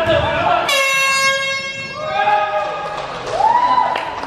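A single steady horn blast, starting suddenly about a second in and lasting just over a second, with voices around it.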